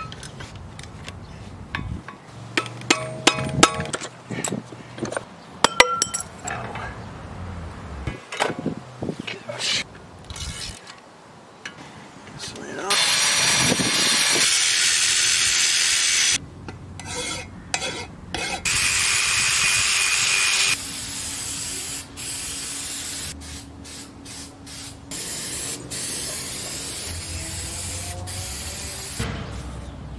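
A cordless drill fitted with a brush attachment runs in two bursts, about three and two seconds long, scrubbing rust off a steel brake dust shield. Before that come scattered metallic clinks and knocks as the brake and suspension parts are handled.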